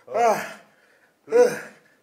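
A man's forceful voiced exhalations, two loud huffs a little over a second apart, pushed out with the strain of lifting dumbbells in bent-over raises.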